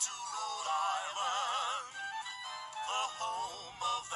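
Male voices singing a show tune with strong vibrato over orchestral accompaniment, holding a long note near the start and then moving into a new phrase.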